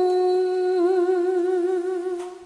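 A woman's voice holding one long sung note with a slight waver, with little or no accompaniment under it.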